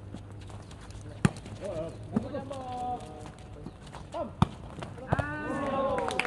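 A volleyball struck sharply twice, about a second in and again past four seconds, amid players' drawn-out shouted calls that swell near the end as a point is played out.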